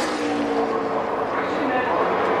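A pack of NASCAR Cup stock cars' V8 engines running flat out in the draft, a steady drone of several engines. Near the end the pitch falls briefly as cars go by.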